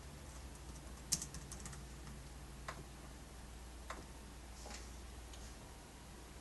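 Faint typing on a Sony VAIO laptop keyboard: a quick run of keystrokes about a second in, then a few single key taps spaced a second or so apart.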